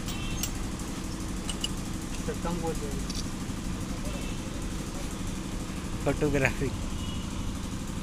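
An engine idling steadily in the background, a low pulsing rumble, with a few light metal tool clicks and a brief voice about six seconds in.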